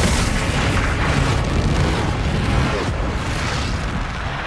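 Cinematic sound effects of a speedster taking off: a sudden loud rush of noise that runs into a long, deep rumble, with dramatic score music underneath, easing off near the end.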